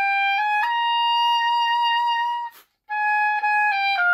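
Oboe playing a phrase from an etude: two short notes stepping up into a long held note, a brief break about two and a half seconds in where the player lets a little air out, then the phrase resumes.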